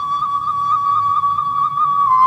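Instrumental introduction of a song: a high melody instrument holds one long, slightly wavering note over soft low accompaniment.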